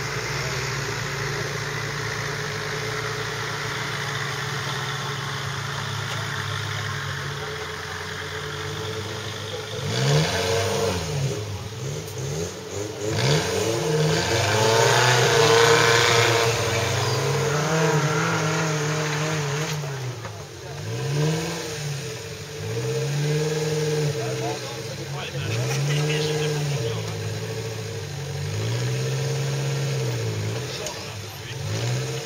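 Off-road trial 4x4's engine running steadily for about ten seconds, then revved hard again and again, the pitch rising and falling every couple of seconds as the truck claws on a steep dirt bank.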